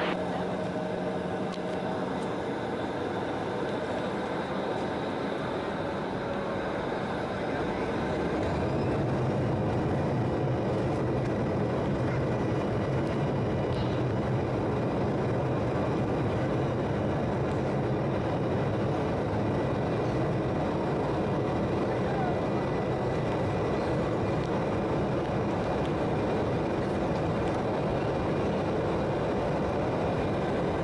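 Cabin noise of an Embraer 170 on its takeoff run: the twin CF34 turbofan engines run steadily, then rise to a louder, deeper rumble about eight seconds in as thrust comes up for takeoff.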